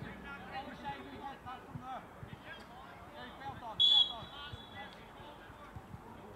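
A referee's whistle blown once, a short high blast about four seconds in, for a free kick. Faint shouts from players on the pitch sound throughout.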